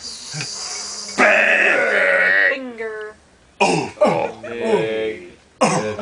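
Improvised wordless voices of an experimental vocal chorus. A hissing breath comes first, then a loud, rough, held vocal tone about a second in, then several overlapping vocal swoops that fall in pitch.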